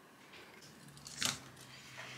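Quiet hand handling of fabric pieces and a marking pen on a cutting mat, with one brief soft rustle about a second in, over a faint steady hum.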